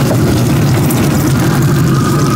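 A motor running steadily with a loud, even hum and a faint high whine.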